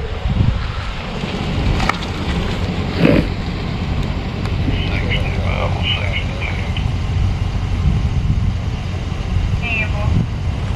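Outdoor road noise: a steady low rumble of wind on the microphone, with a pickup truck driving up and stopping.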